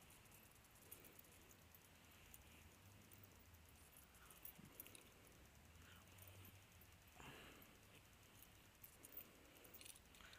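Near silence with a few faint, scattered clicks and clinks of a metal dog-proof raccoon trap and its chain being handled.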